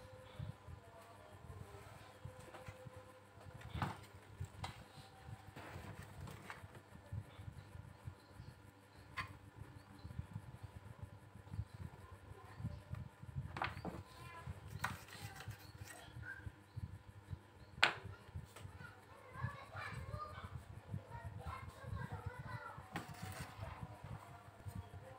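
Faint background voices, clearest near the end, with a few sharp clicks scattered through; the loudest click comes about three-quarters of the way in.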